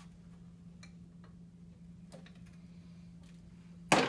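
Faint scattered clicks and light handling noises from working a bonsai's root ball and wires in its pot, over a steady low hum, then one loud knock near the end.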